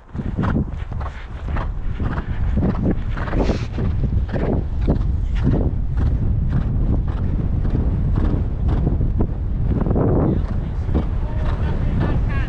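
Wind buffeting a helmet-mounted camera's microphone as a horse canters on a sand track, with a rhythmic beat about twice a second from its strides.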